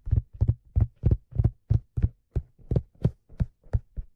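Fingers tapping on a black leather fedora: a steady run of low, dull taps, about three a second.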